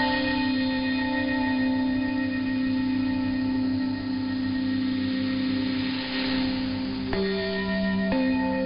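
Radio Thailand's interval signal heard over a 9940 kHz shortwave broadcast: a slow melody of long, sustained ringing tones, with the notes changing about seven seconds in. A faint hiss swells and fades in the middle. It is the interval signal looping in place of the scheduled English programme.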